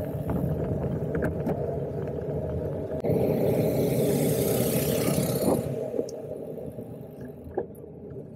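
Wind rumble and road noise picked up by a camera riding on a bicycle in motion, with a louder hissing stretch in the middle. It quietens over the last two seconds, with one sharp click near the end.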